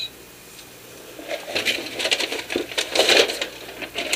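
Paper and packaging rustling and crinkling as they are handled by hand, starting about a second in as a dense run of crackles.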